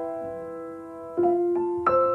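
Gentle piano background music: a held chord fades for about a second, then new notes are struck one after another.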